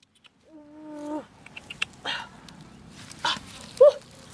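A short held call at an even pitch, then a brief rising-and-falling cry near the end. Between them come light clicks and rustling from leaves and twigs being handled on an orange bush as fruit is picked.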